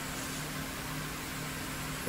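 Cooling fans on the heat sinks of a homemade Peltier thermoelectric mini fridge running steadily: an even whir with a low hum of two steady tones.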